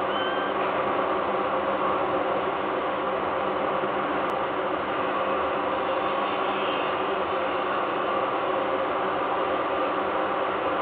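Steady industrial machinery hum from the power plant: several held tones under a constant hiss, with no change in level.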